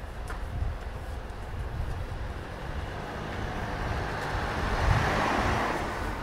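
Street ambience with a car passing close by: its tyre and engine noise swells to a peak about five seconds in and then fades. A low rumble runs underneath.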